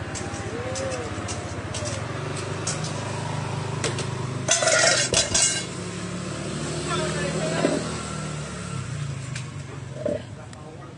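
A motor vehicle engine running steadily, with background voices. A brief loud burst of noise comes about five seconds in.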